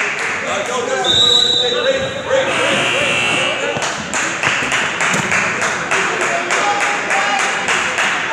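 Basketball game sounds in a gym, with a basketball bouncing on the hardwood floor in a quick, even run of knocks over the second half under the crowd's chatter. About a second in there are two short high steady tones.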